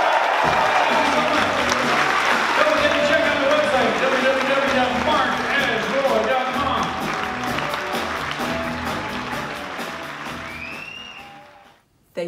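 A live rock band plays out the end of a song while the audience applauds. The sound fades out near the end.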